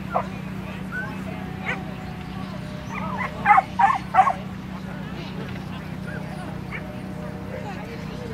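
A dog barking: a couple of single barks early on, then a quick run of about four sharp barks about three and a half seconds in.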